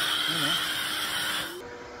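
Kawasaki HPW 220 electric pressure washer spraying soap foam through a foam-cannon gun: a loud, steady hiss of spray over the pump's hum. The spray stops sharply about one and a half seconds in, leaving a fainter steady hum.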